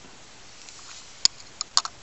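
A few small, sharp clicks of a plastic toy boat seating on its die-cast metal trailer as the pair is set down on a table. The loudest click comes a little over a second in, followed by a quick cluster just after.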